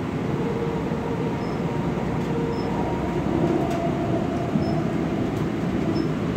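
Interior running noise of a light-rail car in motion: a steady rumble of wheels on the rails, with a faint shifting whine and a few light ticks.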